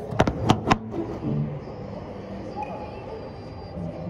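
Three sharp knocks in quick succession within the first second: a handheld camera being handled and set down on a hard display counter. Then steady store background noise with faint distant voices.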